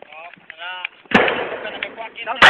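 Gunfire in a firefight: a sharp shot about a second in, followed by more shots and their echo fading out.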